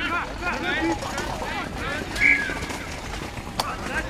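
Several distant voices shouting and calling over one another across a rugby pitch, with a brief high note about two seconds in and a sharp click near the end.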